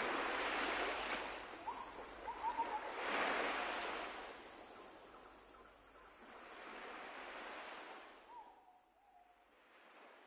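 Surf washing ashore in slow swells every few seconds, with a few faint short bird calls, fading out.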